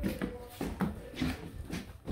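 A few soft knocks and rustles in a quiet small room, scattered through the two seconds, typical of a phone being handled.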